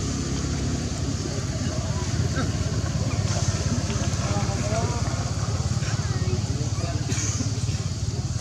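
A steady low engine hum, like an engine idling, with faint voices or calls over it.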